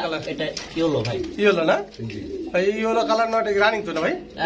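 Pigeons cooing in a small room, with people talking.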